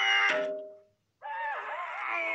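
Cartoon soundtrack: held music tones with a falling glide, cut off by a hit about a third of a second in, then a brief silence. From just past the middle, a cartoon dog's wavering cry sounds over music.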